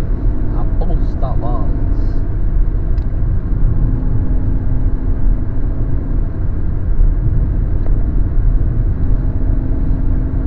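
Steady low rumble of a car's engine and tyres on the road, heard from inside the cabin at highway speed. A brief voice sounds about a second in.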